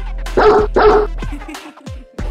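A dog barks twice, about half a second apart, over music with a heavy, steady bass. The music drops out briefly near the end.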